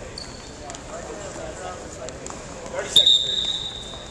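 Referee's whistle: one loud, sharp, steady blast about three seconds in, lasting about a second, stopping the wrestling. A fainter, shorter whistle tone sounds near the start, over low gym murmur.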